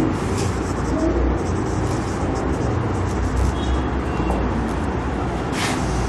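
Marker pen writing on a whiteboard, a few faint scratchy strokes, over a steady low rumbling background noise.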